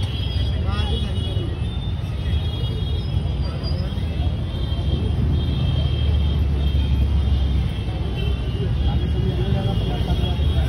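Busy street ambience: a steady low rumble of road traffic with voices in the background.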